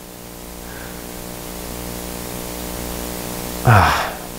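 Steady electrical hum and hiss in the recording, with a stack of even hum tones, slowly growing louder. A person's breathy sigh comes near the end.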